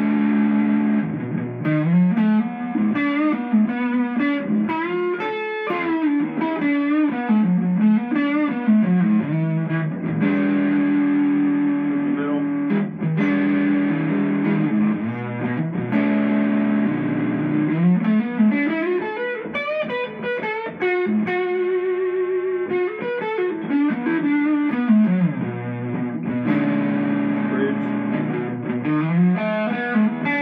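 Tele-style electric guitar with overwound Alnico 5 pickups, played on its neck pickup through distortion: held chords alternating with single-note runs that climb and fall.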